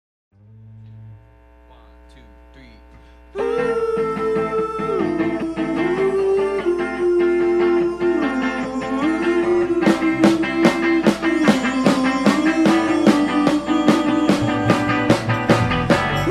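Live rock band starting a song: after a few seconds of faint amplifier hum, electric guitars and keyboard come in loud with a sustained, slowly moving melody, and drums join with a steady beat about ten seconds in.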